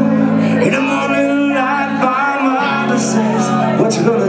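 A live ska band playing: held low chords that change about two seconds in, a man's voice at the microphone over them, and cymbal strokes near the end.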